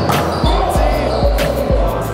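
Background music with a steady thumping bass beat, mixed with a noisy swell in the middle range.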